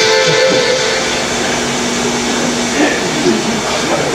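Soft background music from a film soundtrack, played back over a hall's loudspeakers, with a low note held in the middle and a steady hiss underneath.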